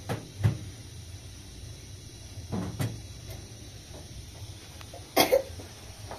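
A metal kettle set down on the top of a sheet-metal heater stove with two clunks. More knocks of household objects being handled follow: a pair midway and the loudest pair about five seconds in.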